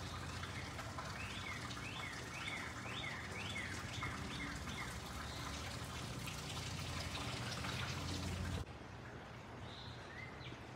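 Outdoor background noise, a steady low rumble, with a bird singing a run of about seven quick, repeated chirps between about one and four seconds in. The background drops suddenly near the end.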